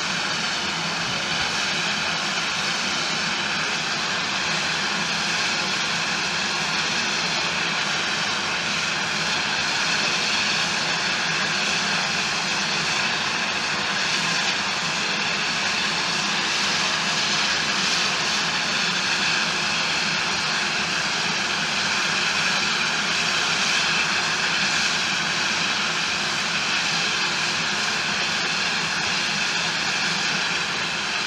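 Steam locomotives standing with steam escaping in a loud, steady hiss that carries on without a break.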